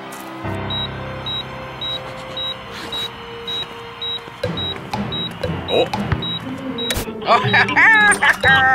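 Low sustained background music with a short, high electronic beep repeating steadily about twice a second, like a hospital heart monitor. A sharp click about seven seconds in, then a voice near the end.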